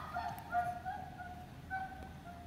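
Faint bird calls in the background: a few short, thin, steady notes.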